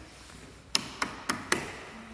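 Wall light switches flicked on one after another: four sharp clicks about a quarter second apart, turning on the room's lights.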